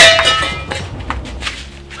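A single loud metallic clang as a hoe's metal blade hits the ground, ringing with several clear tones that fade within about half a second.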